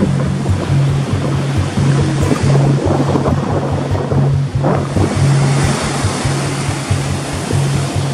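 Sea surf breaking and washing up a sandy beach, a continuous rush of wave noise, laid over background music with a steady, repeating bass line.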